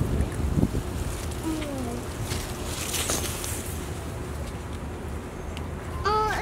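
Wind buffeting the microphone: a steady low rumble. A short faint voice comes in about one and a half seconds in.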